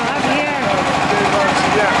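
Generator engine running steadily, powering a shop's ice cream freezers, with voices talking over it.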